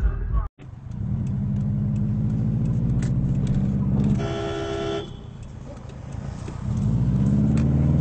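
A car engine accelerates, its pitch rising slowly. About four seconds in, a car horn sounds once for nearly a second. Near the end the engine rises again.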